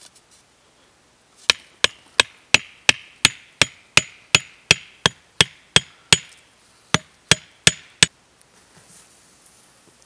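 A carved wooden tent stake being hammered into the ground: a run of fourteen sharp knocks at about three a second, a short pause, then four more.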